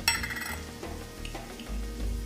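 A bright clink of metal against the sauté pan just after the start, ringing briefly, over the low sound of vegetables frying in the pan.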